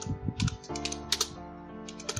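Keys clicking on a computer keyboard as a word is typed, a quick run of strokes, over background music of steady held tones.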